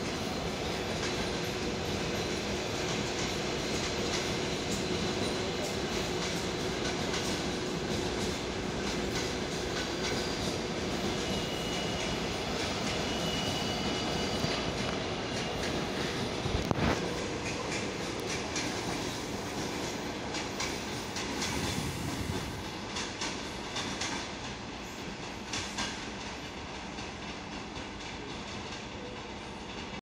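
Passenger coaches rolling past, their wheels clacking over the rail joints in a steady run of clicks over a rumble. The noise dies down over the last few seconds as the train pulls away.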